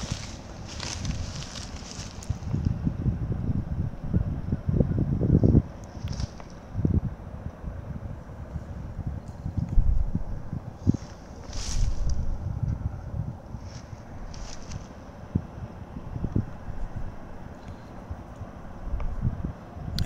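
Wind buffeting an outdoor microphone in uneven gusts, with a few brief scuffs and rustles.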